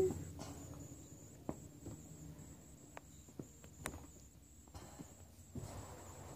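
Quiet room with a faint steady hum, broken by a few faint scattered clicks and a soft rustle near the end.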